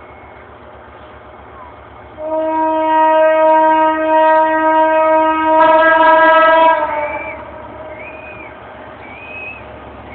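An EMD GT22 diesel locomotive's air horn sounds one long blast, over the low rumble of the moving train. About two thirds of the way through, its second horn joins with a thicker, higher chord, and both stop together.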